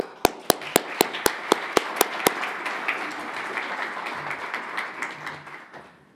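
An audience applauding. One person's claps close to the microphone stand out sharply at about four a second for the first two seconds, and the applause dies away near the end.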